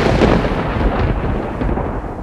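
Rumbling thunder sound effect, loudest at the start and slowly dying away.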